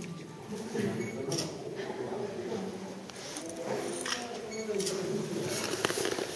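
Indistinct chatter of several people talking in the background, with a few short sharp clicks.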